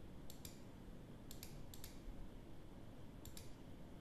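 Four faint computer mouse clicks, each a quick double tick, spread over the few seconds over a low steady room hum.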